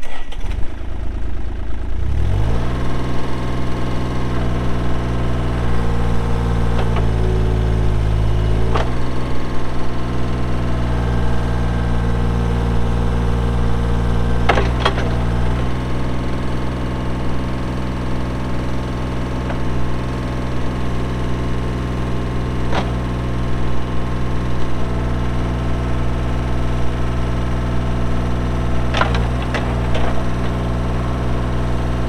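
The Kubota diesel engine of a Bobcat E35i mini excavator cranks and catches about two seconds in, then runs steadily. Its note drops a little about nine seconds in. A few sharp clicks come over the running engine later on.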